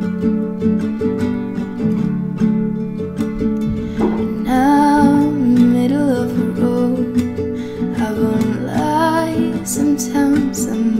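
Acoustic guitar strummed in a steady pattern, joined about four seconds in by a woman singing; her voice drops out briefly and comes back near the end.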